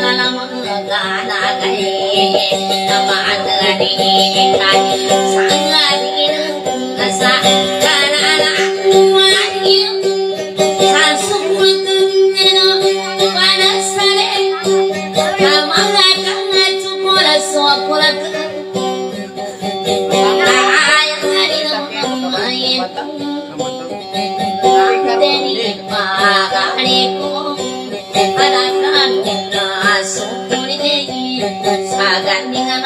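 Dayunday music: an amplified acoustic guitar played under high, wavering singing, with one steady held tone running underneath throughout.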